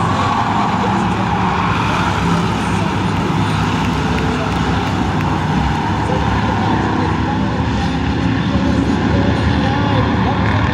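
A field of short-track stock cars running together around the oval, a loud steady blend of many engines with no break.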